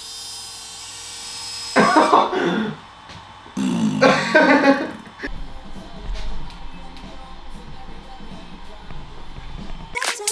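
Steady electric motor whine from the DJI Inspire 2's transforming landing gear moving after its button is pressed, stopping a couple of seconds in. Laughing and exclaiming voices follow. Background music then comes in with a low bass.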